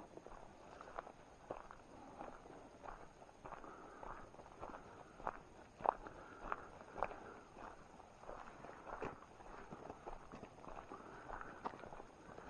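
Footsteps on a dirt forest trail at a steady walking pace, about one and a half to two steps a second, with one louder step about halfway through.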